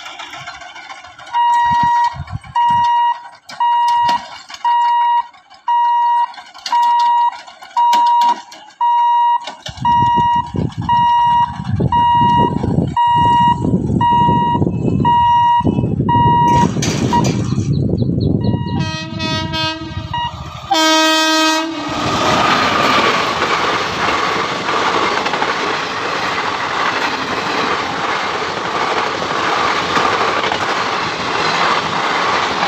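A level-crossing warning hooter beeping at an even pace, a little more than once a second, as the gate closes. About two-thirds of the way through, a locomotive horn blows twice. A passenger train then runs past, with the steady noise of coaches rolling over the rails.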